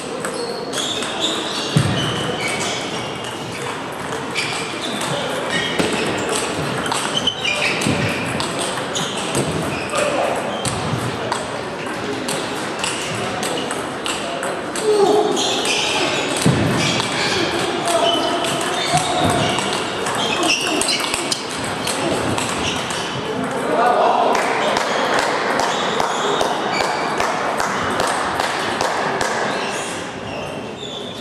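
Table tennis rallies: the ball clicking sharply off rubber bats and the table again and again, in a large echoing hall. Voices and play from other tables carry on underneath.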